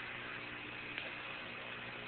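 Faint steady hiss and low hum of the Apollo air-to-ground radio link between transmissions, with one faint click about a second in.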